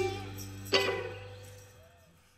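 The last chord of a live rock song with vocals dying away, one short guitar strum about three-quarters of a second in, then the sound fades out to silence.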